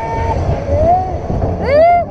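Roller coaster ride with a steady low rumble of wind on the microphone and the cars running on the track. Riders' voices rise and fall over it, with a loud, high rising-and-falling yell near the end.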